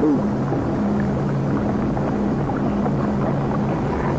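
A low, steady drone of held notes with a grainy hiss beneath, the underscore of a nature documentary's soundtrack.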